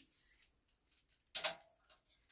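A single sharp clack of a clothes hanger against a metal garment rack about one and a half seconds in, after a near-quiet stretch.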